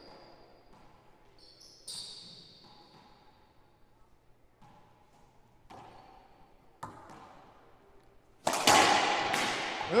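Racquetball play in an enclosed hardwood court: the ball bouncing and being struck, with sharp cracks off the racquet and walls that ring and echo in the court. The two loudest hits come near the end, one after the other, each with a long echo, and a short rising squeal follows at the very end.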